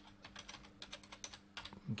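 Computer keyboard typing: a quick, uneven run of about a dozen keystrokes, over a faint steady hum.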